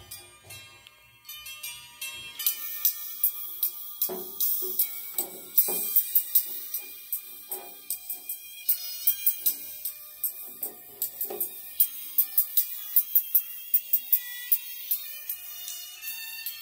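Music played through a small paper-cone tweeter driven through a 1.5 µF electrolytic capacitor acting as its high-pass filter. The sound is thin and treble-heavy, with sharp percussion ticks. It is faint for the first two seconds and then comes in louder.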